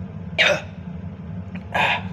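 A man gives two short, harsh coughs about a second and a half apart, his throat caught by the burn of very spicy Samyang noodles.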